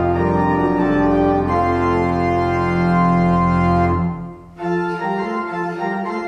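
Church organ playing held chords over a deep bass. About four seconds in, the chord stops for a brief gap, then the playing resumes lighter, without the deep bass.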